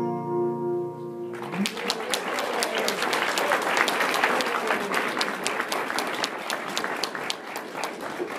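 The song's final held note, sung over guitar, ends about a second and a half in. A congregation then applauds, many hands clapping steadily for the rest.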